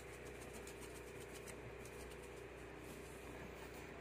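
Low, steady background hum and hiss with no distinct events.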